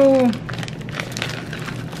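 Clear plastic packaging crinkling in short, irregular rustles as a jump rope in its bag is handled and lifted out of a cardboard box.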